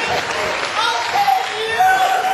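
Audience applauding, with voices calling out and cheering over the clapping.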